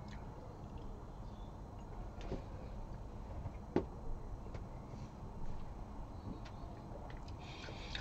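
Quiet room tone with a few faint clicks, the clearest a little under four seconds in, as a stemmed glass is set down on a table.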